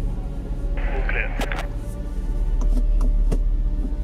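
Tense background music built on a steady low drone. A brief tinny voice, as over a radio, cuts in about a second in, with a few sharp clicks through the middle.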